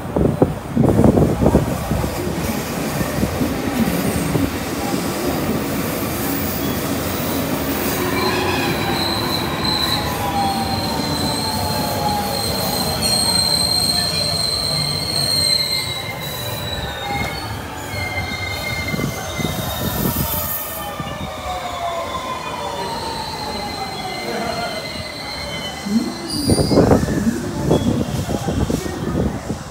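JR West 223 series electric train pulling into the platform and slowing to a stop: wheels rumbling over the rails, a high squeal for several seconds, and the traction motors' whine falling in pitch as it slows. A short louder burst of sound comes near the end.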